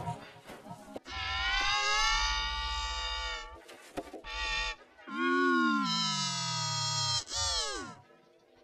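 Electronically warped, pitch-shifted sound of the kind made by video-editor audio effects: two long held, many-toned notes. Under the second, a low tone slides steadily down, and it ends in a steep falling glide, with short clicks between the notes.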